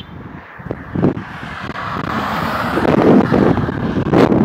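A car going by on a two-lane highway, its noise building toward the end, with wind rumbling on the microphone.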